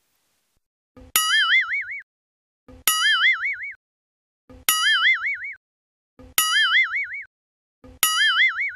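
Cartoon 'boing' sound effect repeated about every second and three-quarters, each a short tap followed by a bright, wobbling springy tone lasting under a second. It plays four times, with a fifth starting at the very end, as each new head pops onto the screen.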